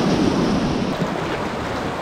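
Rushing whitewater of a shallow river rapid, a steady loud wash close to the microphone. About a second in, the sound shifts and drops a little as the view changes to a second spot in the rapid.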